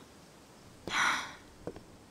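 A woman's short, breathy sigh about a second in, followed by a faint click.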